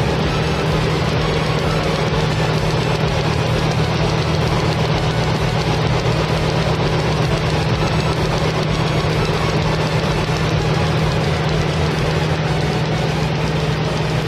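Engine running in the engine bay with a loud, steady rushing noise over a constant low hum.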